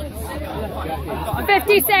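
Sideline voices chattering, with a loud, high shout about a second and a half in.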